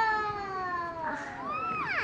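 A drawn-out, meow-like call held on one high note that slowly falls in pitch, followed by a shorter call that rises and falls near the end.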